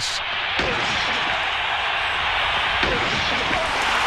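Stadium crowd cheering in a steady roar, with a heavy thump of the hit about half a second in.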